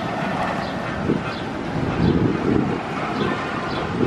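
Bolliger & Mabillard inverted roller coaster train running along its steel track, a steady rumble that swells about two seconds in.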